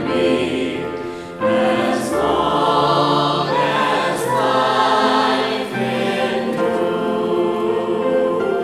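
A vocal trio of one man and two women singing a hymn in harmony with held notes, accompanied by grand piano. There is a brief break between phrases about a second and a half in.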